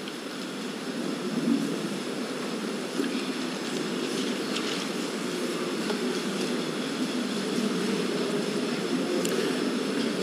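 Steady low room noise of a large meeting hall with a seated audience, an even rumble without distinct words or sharp sounds.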